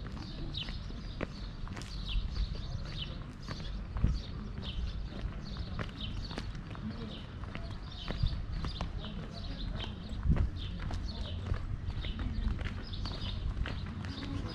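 Footsteps on stone paving and steps, a step about every half second, over a steady low rumble.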